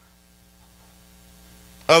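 Faint, steady electrical mains hum from the sound system in a pause between words; a man's voice resumes near the end.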